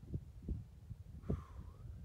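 Wind buffeting a phone's microphone: an irregular low rumble of soft thumps, with the strongest thump and a short brighter sound about a second and a quarter in.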